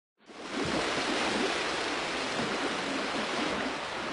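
Sea surf washing on a shore, a steady rush that fades in just after the start.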